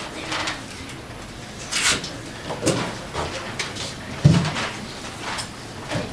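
Large cardboard props being handled and shifted: a few brief scrapes and rustles, with a louder thump a little past four seconds in.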